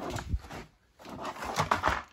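Handling noise: rustling with light clicks and knocks, in two stretches with a short lull between them.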